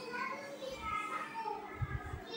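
Children's voices chattering faintly in the background, with a short low knock of a cable being handled near the end.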